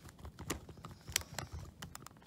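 Faint, irregular clicks of a metal screwdriver turning a small screw into a Zhu Zhu Pet's plastic battery housing as the screw is tightened.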